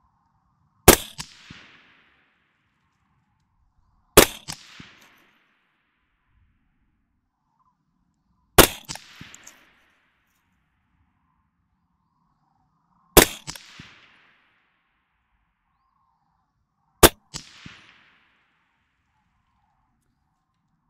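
Five slow, deliberate semi-automatic shots from a suppressed AR-15 carbine: a Colt 6920 with a 14.5-inch barrel and a SureFire FA556-212 suppressor, firing M193 55-grain 5.56 ball. The shots come every four seconds or so, and each is a sharp report that trails off over about half a second.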